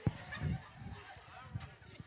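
A sharp knock right at the start, then faint voices in the hall with a few dull low thumps.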